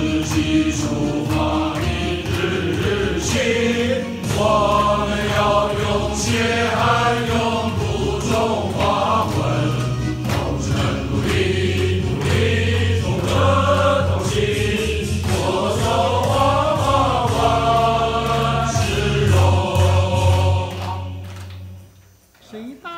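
A large group of people, mostly men, singing a song together in unison over a steady low accompaniment; the singing fades out just before the end.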